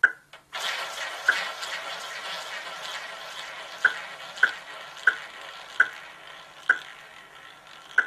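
A roulette ball launched round the ball track of a spinning roulette wheel, rolling with a steady whirring hiss that slowly fades as it loses speed. Sharp ticks come through the whirr, further apart as the ball slows.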